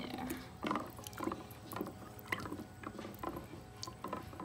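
Wax taper candles knocking against each other and the plastic tub as they are set into hot water: a series of light clicks and knocks, about two a second.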